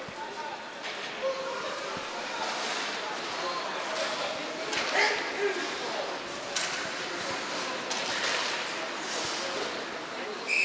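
Ice hockey game in a rink: a steady hiss of background noise with distant crowd voices and shouts, broken by a few sharp clacks from sticks and puck.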